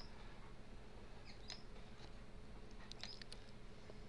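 Quiet room noise: a faint steady hiss with a few faint, short clicks and small high chirps scattered through it.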